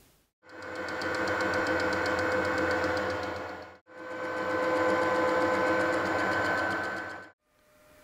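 Metal lathe running with a steady whine, its faceplate turning a clamped brass plate as the tool takes light cuts to form an arc. Heard as two stretches that each fade in and out, with a brief break near the middle.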